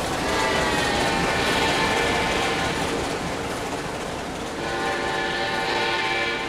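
Steam whistle of Grand Trunk Western locomotive #6325 sounding twice, a long blast that eases off after about three seconds and a second one starting near the end. Under it runs the steady rumble and rail clatter of the train passing.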